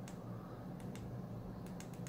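Faint clicks of the Lost Vape Mirage DNA75C box mod's small menu buttons being pressed, a few soft ticks over a steady low hum.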